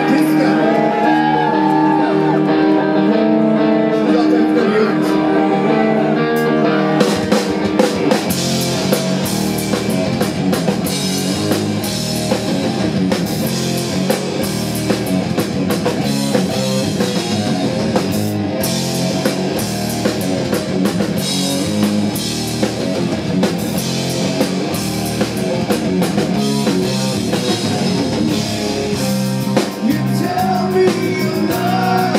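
Progressive metal band playing live with electric guitars, bass and drum kit. It opens on sustained chords, and about seven seconds in the drums and full band come in with crashing cymbals.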